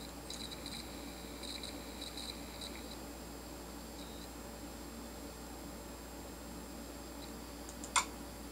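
Laptop hard drive running with its cover off, the platter spinning with a steady hum while the read/write head arm seeks in short high-pitched chirps through the first three seconds of a folder copy, then once more about four seconds in. A sharp click right at the end.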